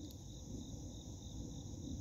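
Steady, high-pitched chirring of insects, faint, with a low rumble underneath.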